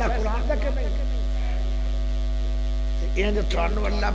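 Steady low electrical mains hum in the microphone's sound system, unbroken throughout. A man's voice speaks over it in the first second and again from about three seconds in, with a pause between.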